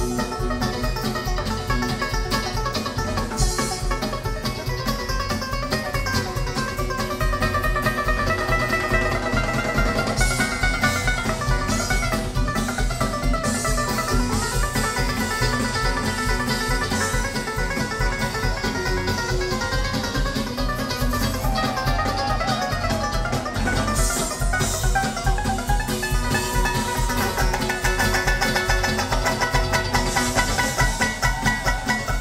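Live bluegrass band playing at full volume: mandolin, acoustic guitar, banjo, electric bass and drums, with plucked-string lead lines running over a steady drum beat.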